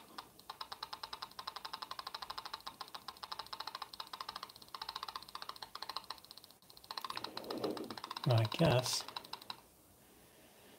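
Homemade Atari synth kit sounding through its small built-in speaker: a buzzy, rapidly pulsing tone as the knobs are turned, then, near the end, louder sweeping pitch glides up and down. The output is weak: the volume knob is giving little level.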